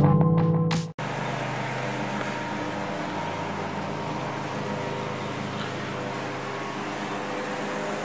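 Electronic music cut off abruptly about a second in, then a steady background hum and hiss of outdoor ambience with no distinct events.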